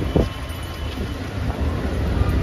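Street traffic noise: a steady low rumble, with a short sharp sound about a quarter second in.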